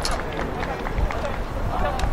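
Indistinct voices of football players talking and calling to each other across the pitch during the post-match handshake, over a low steady rumble.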